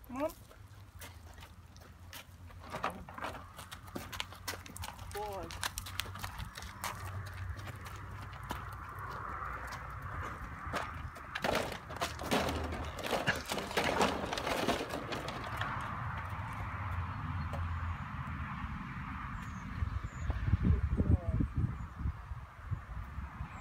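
A horse's hooves and a person's footsteps crunching and clicking on gravel, over a steady low rumble of wind on the microphone. A few heavier thumps come near the end.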